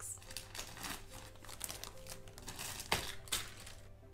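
Plastic zip-lock bags crinkling and rustling as hands rummage through them and pull two of them out of a plastic storage box, with one sharper crackle about three seconds in.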